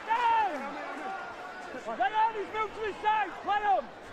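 A raised voice shouting outdoors: one long falling call at the start, then a quick run of four or five short, arching calls in the second half.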